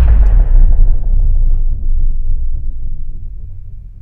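Cinematic logo sound effect: the deep rumbling tail of a boom, strongest in the low bass, that slowly fades away.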